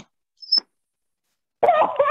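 Silence on a video-call line, broken about half a second in by one brief, high-pitched chirp. A person's voice starts near the end.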